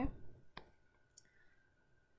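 A single sharp click about half a second in, then a faint high tick, over quiet room tone with a faint steady hum.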